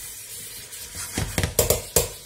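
Spatula stirring meat, onion and herbs in a metal pressure cooker, with several sharp knocks of the spatula against the pot in the second half.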